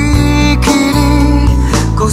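Pop-rock band music with guitar and drums, between two sung lines of the verse.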